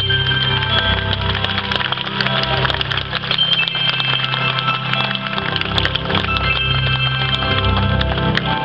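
Live progressive rock band playing: held notes over a steady bass line, with many short percussive clicks and taps running through it.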